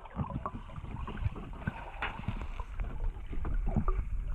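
Underwater sound picked up by a camera in its waterproof housing: a muffled water rush with irregular knocks and clicks as hands handle objects on the lake bed.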